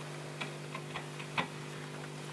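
A few sparse, sharp clicks and taps from objects being handled during a quiet, amplified noise-music improvisation, over a steady low hum. The loudest click comes about a second and a half in.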